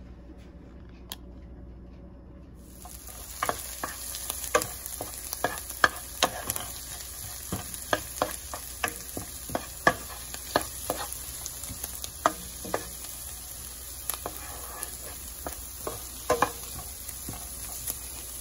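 Diced red onions sizzling in oil in a pan, beginning about three seconds in, while a wooden spoon stirs them with frequent sharp knocks and scrapes against the pan.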